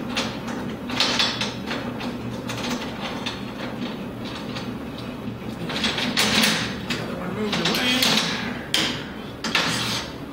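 Hand Allen screwdriver turning short steel screws and flat washers into a metal motor bracket: metal scraping and clicking. The louder scrapes come about a second in and again from six to nine and a half seconds in, over a steady low hum.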